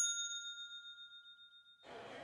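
A single bright bell-like ding, struck once and ringing out as it fades over nearly two seconds before cutting off abruptly. It is a chime sound effect marking an on-screen title card.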